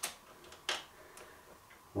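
A few short metallic clicks, the loudest about three quarters of a second in, as a battery cable's lug is brought onto a leisure battery's terminal post to connect the bank.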